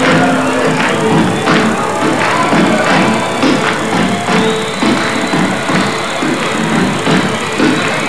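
Live Greek laïko band playing, with regular drum strikes carrying the beat.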